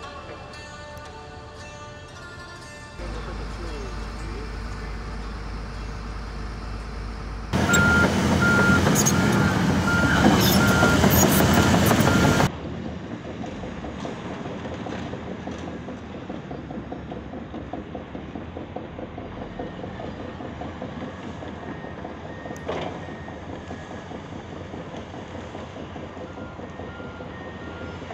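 Heavy earthmoving machinery at work, crawler excavators and bulldozers running their diesel engines, with a backup alarm beeping at a steady rhythm. The machinery is loudest in a stretch near the middle, where the beeping is clearest, and the beeps come again, fainter, near the end.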